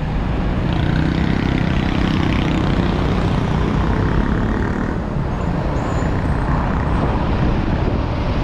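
Heavy road traffic running close by: car and truck engines and tyre noise, a steady, loud wash of sound. A deeper engine rumble stands out through the first half.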